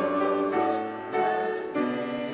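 Choir and congregation singing a slow hymn with piano accompaniment, in held notes that change pitch about every half second to second.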